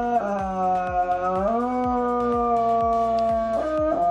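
A bull terrier howling: one long, held note that rises slightly about a second and a half in, breaks off near the end, then starts again.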